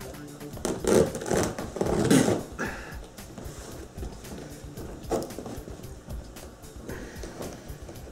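A blade sawing and scraping at duct tape on a cardboard box in irregular strokes, with the tape hard to get through. Music plays under it.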